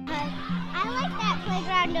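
Children shouting and calling out at play, over background music.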